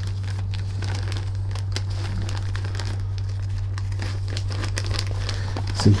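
Paper and clear plastic document sleeves rustling and crinkling as a folder's pages are handled, a string of small crackles, over a steady low hum.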